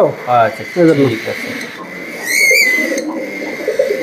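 Pigeons cooing in a loft, a low pulsing murmur, with one short high chirp from another bird about halfway through.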